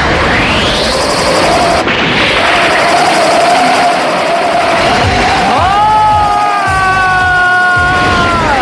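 Anime sound effects for a whirlwind blade attack: a loud, continuous rush of wind and blast noise with a steady whistling tone over it. About two-thirds of the way in, a second pitched tone rises and then holds.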